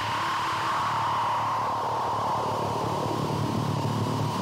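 Steady hissing wash of distorted electric guitar amplifier noise with a low hum underneath, left ringing out at the end of a punk song.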